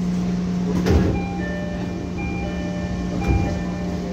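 A short melody of bell-like chime notes plays over the steady hum of a moving train. Two thumps come through, about a second in and again near the end.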